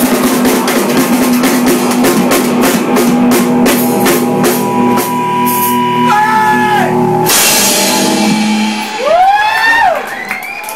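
Live rock band, hollow-body electric guitar and drum kit, playing out the end of a song. The drumming stops about seven seconds in, leaving a held guitar chord, and high sliding tones rise and fall near the end.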